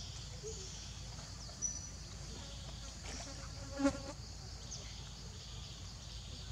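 A steady, high-pitched chorus of forest insects, with a brief pitched animal call just before four seconds in.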